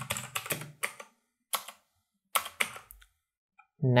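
Computer keyboard typing: short runs of sharp keystrokes in three groups with quiet gaps between them.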